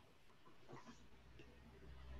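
Near silence: faint room tone with a couple of faint, brief sounds, and a low hum coming in near the end.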